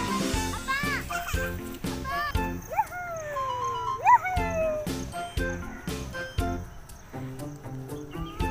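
Background music with a steady beat. Over it come several short, high, pitched calls that rise sharply and then slide down, mostly in the first half.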